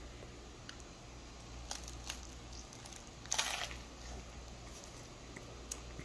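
Faint sounds of a person biting into a thick double bacon cheeseburger topped with crispy onion rings, with a few small mouth clicks and a short crunch about three seconds in.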